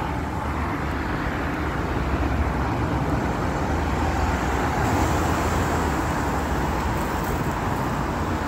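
Steady city street traffic: cars, a pickup truck and a van driving past close by, engine and tyre noise on asphalt, a little louder about five seconds in.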